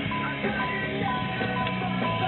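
Guitar music playing over a car stereo, streamed by Bluetooth from a phone to a modern head unit, with sustained notes.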